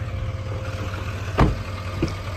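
A pickup truck's door shut once with a sharp thump about one and a half seconds in, over a steady low hum of the truck idling.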